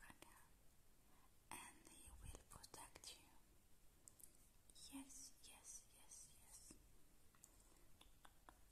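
Soft close-up whispering, too faint to make out words, in two short stretches: about a second and a half in, and again around five seconds in.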